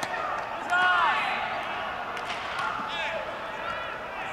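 Players' voices and calls during baseball fielding practice, with one loud shout about a second in and a few sharp knocks.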